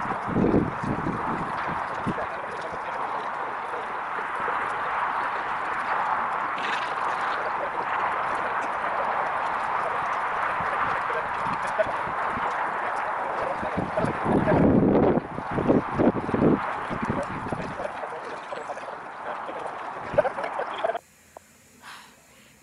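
Steady murmur of many people talking together, with louder, closer bursts near the start and about a quarter of a minute in. The murmur breaks off suddenly about a second before the end.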